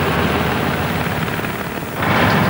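Small hatchback car's engine running as the car drives up and pulls to a stop, with a throbbing, uneven low rumble.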